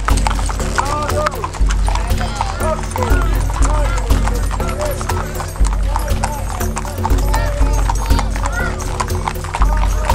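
Hooves of many horses walking on pavement: a dense, steady clatter of clip-clops, with voices and music behind.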